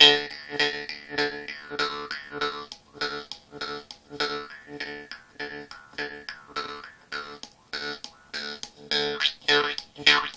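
Jaw harp (vargan) played with a steady rhythm of plucks, about two or three a second, on one unchanging drone note, while the overtones above it shift from stroke to stroke.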